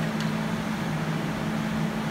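Steady low hum over an even fan-like hiss of running machinery, with one faint click just after the start.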